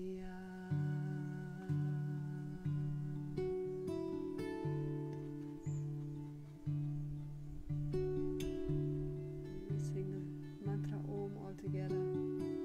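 Slow acoustic guitar playing for a mantra meditation: a low note or chord is struck about once a second over steady ringing tones.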